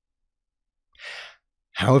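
A single short in-breath by the narrator about a second in, between stretches of dead silence, with speech beginning just before the end.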